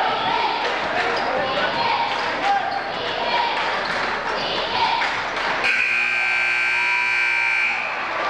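Gym crowd chatter with a basketball bouncing on the hardwood court, then the scoreboard horn sounds a steady buzzing tone for about two seconds near the end, the horn that ends the game.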